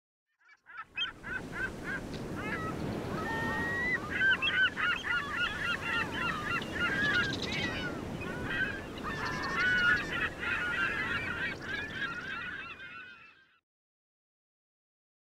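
A flock of birds calling over one another in many short, overlapping honking calls, with a steady low rush underneath. The sound fades in about a second in and fades out near the end.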